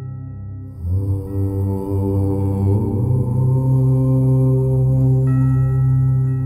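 A deep voice chanting one long, held 'Om', starting about a second in and stepping up in pitch about halfway through, over steady ringing singing-bowl tones; the bowl is struck again near the end.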